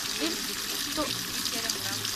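Steady splashing hiss of hot spring water pouring from a fountain spout into a stone basin.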